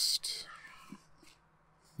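A man's short breathy exhale, hissy and whisper-like, fading out within the first half-second, then dead silence.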